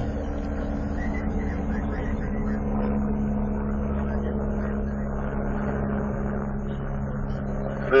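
Steady low hum of a stationary patrol car running, heard from inside its cabin.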